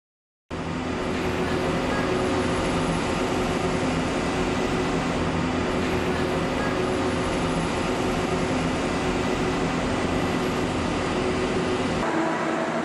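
Fish-noodle production machinery running with a steady mechanical hum and whir, several steady low tones over an even noise. It starts abruptly about half a second in.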